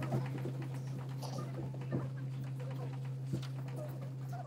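Classroom room sound as children settle onto a carpet: faint shuffling, a few small knocks and scattered murmurs over a steady low hum.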